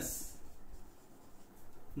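Faint scratching of handwriting, a pen or marker moving over a writing surface, in a short pause between spoken words.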